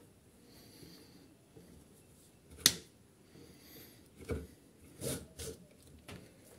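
Pliers and hands pulling the old cord out of a small-engine recoil starter pulley: mostly quiet handling, with one sharp click a little before halfway and a few softer knocks near the end.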